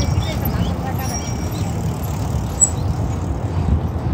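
Outdoor city-park ambience dominated by a steady low rumble, with faint voices of passers-by and a few thin bird chirps near the start.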